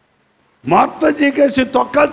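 About half a second of silence, then a man speaking, preaching in Telugu into a microphone.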